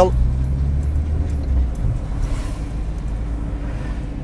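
Low engine and road rumble heard inside a moving car's cabin, with a steady engine hum that eases off about two seconds in.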